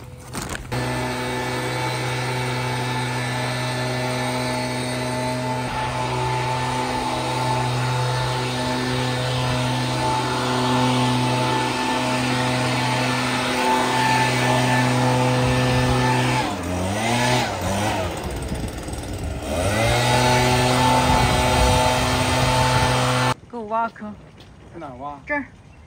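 Gas-powered leaf blower's small engine running steadily at high throttle. Twice, late on, its pitch drops and climbs back up. It starts abruptly and cuts off abruptly shortly before the end.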